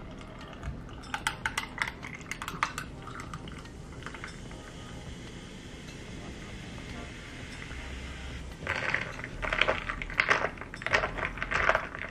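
Carbonated juice poured from a can over ice into a tall glass: ice cubes clink during the first few seconds, then a steady fizzing pour runs for several seconds. Near the end, a straw stirring the ice sets off a run of louder clinks against the glass.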